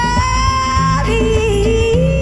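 Live band with a female lead singer, backed by bass guitar, electric guitar, congas and drums. Right at the start the voice slides up to a high held note for about a second, then drops back to a lower melody line.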